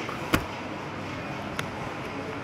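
Two short sharp clicks, a louder one about a third of a second in and a fainter one about a second later, from the phone rubbing against the clear plastic sleeve wrapped around a potted orchid. Steady background noise lies under both.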